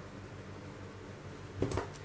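A faint steady hum, then near the end a brief metallic clatter as metal modelling tweezers are picked up off the table.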